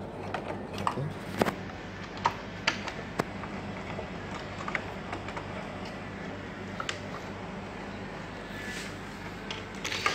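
Light plastic clicks and rattles of power-supply cables and their connector being handled and pushed back into a desktop PC's motherboard socket, most of them in the first few seconds.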